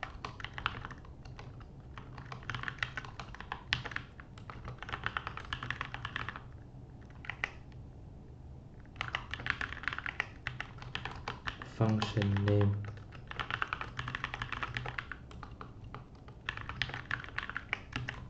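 Typing on a computer keyboard: bursts of rapid keystrokes one to three seconds long with short pauses between them, as code is entered in an editor. Partway through, a brief hum of the voice is the loudest sound.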